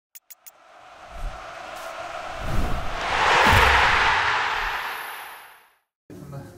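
Logo intro sound effect: three quick clicks, then a whooshing swell with deep booms underneath that builds to a loud peak about three and a half seconds in and fades away before the logo appears.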